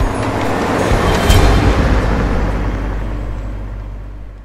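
A convoy vehicle driving past: engine rumble and road noise swell to a peak about a second in, then fade steadily away.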